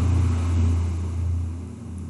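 A steady low hum, easing slightly toward the end.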